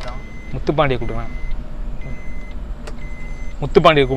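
Steady low rumble of a car's engine and road noise heard inside the cabin, with a man's voice briefly about half a second in and again near the end.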